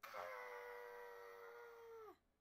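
A woman's long, acted 'Aaaaaagh!' scream, held at one steady pitch for about two seconds, then sliding down and cutting off at the end.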